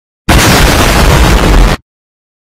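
Loud explosion sound effect laid over the footage: about a second and a half of dense, roaring noise that starts and cuts off abruptly, with dead silence either side.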